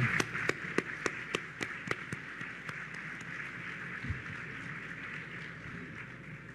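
Applause: hand claps close to the microphone, about three a second, over a crowd clapping, dying down over the first few seconds.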